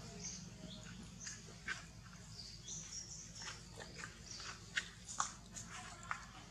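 Scattered small clicks and crackles of dry leaves and a twig as a baby macaque handles them, with a few sharper snaps, the loudest near the end.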